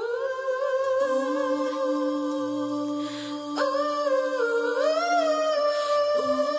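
A cappella vocal harmony hummed without words: several layered voices hold and glide between notes, with a lower part joining about a second in.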